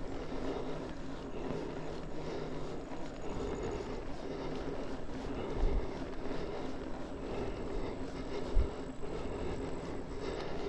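Mountain bike rolling along a gravel road: a steady drone and hiss of knobby tyres on the surface, with two low thumps from bumps, one past halfway and one near the end.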